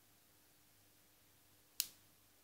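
Near silence, broken about two seconds in by a single sharp click.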